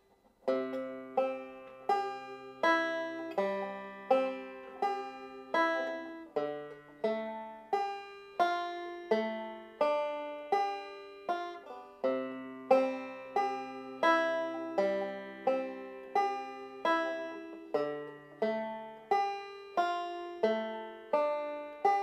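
Five-string banjo picked three-finger style in a steady rhythm, with the fourth string tuned down to C. The notes run as continuous rolls and the chord shifts every few seconds, practising the C to D minor change in time.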